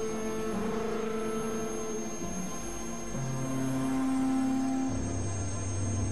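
Dark electronic drone music of held synthesizer tones that change pitch every second or two, with a thin high whine over them. A deep low note comes in near the end.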